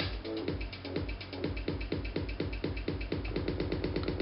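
Electronic dance track at about 125 BPM playing through DJ software in a beat loop, with the loop length shortened step by step so the repeated slice stutters faster and faster, becoming a rapid roll near the end.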